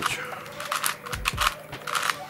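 An MF8 Unicorn plastic twisty puzzle being turned fast by hand while it is scrambled: a quick, uneven run of plastic clicks and clacks as the layers snap round.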